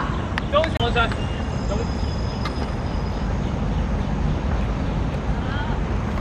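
Faint shouts of voices from the pitch in the first second, over a steady low rumble that runs throughout, with one short click about two and a half seconds in.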